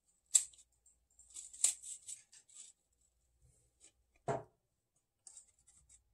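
A green plastic apple slicer and an apple being handled: a scattering of sharp, crisp clicks and scrapes, with a duller knock a little after four seconds in.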